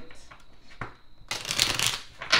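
A deck of tarot cards being shuffled by hand: a few light card clicks, then a quick, loud burst of rapid card flutter in the last part.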